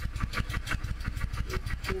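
Honda Steed 600's V-twin engine idling just after being started, with a steady, evenly pulsing exhaust beat.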